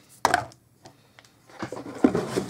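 Things being handled and set down on a desk: a light knock about a quarter second in, then soft rustling and small knocks of card packs and items being moved around near the end.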